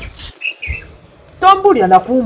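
A small bird chirps twice in quick succession, two short high chirps, and then a person starts speaking.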